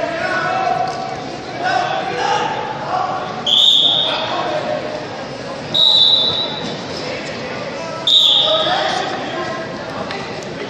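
Wrestling shoes squeaking sharply on the mat three times, each squeak under a second and a couple of seconds apart, as the wrestlers shift their feet. Shouting voices echo through the hall around them.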